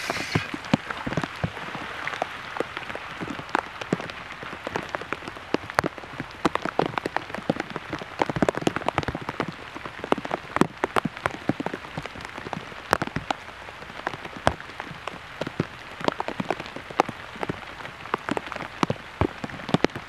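Steady rain, with many sharp, irregular ticks of drops striking close by.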